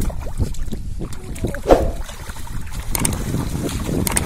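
Shallow muddy water splashing and sloshing as hands grab at fish in it, in irregular splashes, with the loudest, sharpest sound a little before halfway.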